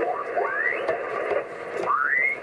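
A Yaesu FT-710 receiver's audio hissing with 40-metre band static as the tuning dial is turned across lower sideband. Twice a rising chirp sweeps up through the hiss as mistuned single-sideband signals pass through the passband.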